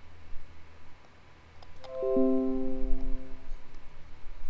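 A computer notification chime: a quick descending run of about five bell-like notes that ring on for a second or so, about two seconds in.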